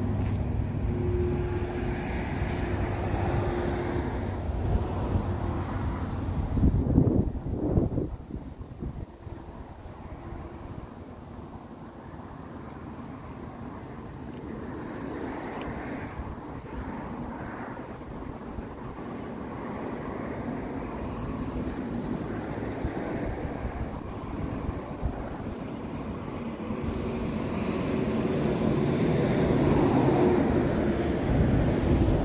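Low rumble of passing vehicle traffic with wind on the microphone. It is loudest about seven seconds in, dies down, then slowly swells again toward the end.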